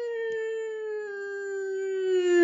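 A long, drawn-out howl: one sustained note sliding slowly down in pitch and growing louder near the end.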